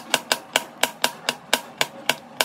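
Kitchen knife chopping a broccoli stem into small pieces on a plastic cutting board: a quick, even run of sharp chops, about five a second.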